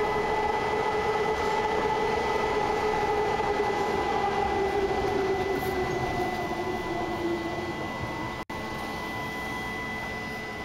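BART train running in a tunnel, heard from inside the car: a steady rumble with a whine that slides slowly down in pitch, and a thin steady high tone over it. The sound cuts out for an instant near the end.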